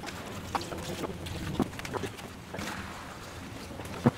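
Used antifreeze pouring from a plastic bucket through a funnel into a jug, a steady trickle with a few light knocks.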